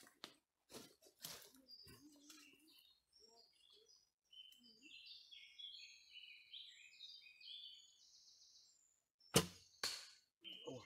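Birds chirping, then near the end a single sharp, loud thump of a bowstring being released as an arrow is shot, followed about half a second later by a much fainter knock.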